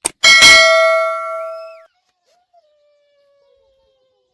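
A mouse click, then a loud bell ding that rings on and is cut off abruptly before two seconds in: the notification-bell sound effect of a YouTube subscribe-button animation.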